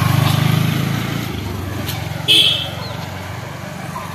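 Motorcycle engine running as it rides off, loudest at first and fading from about a second in as it pulls away. A brief high-pitched sound comes a little past halfway.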